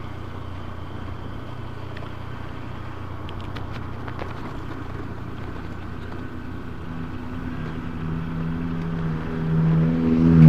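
A motorcycle riding at low speed with steady engine and road noise, then an oncoming Mitsubishi van's engine growing steadily louder over the last few seconds as it approaches.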